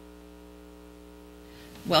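Steady electrical mains hum, a low buzz with a stack of even overtones. Speech starts right at the end.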